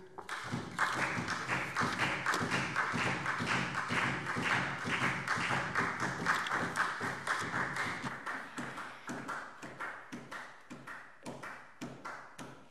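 Applause in a parliament chamber after a speech: many people clapping, thinning out and fading toward the end.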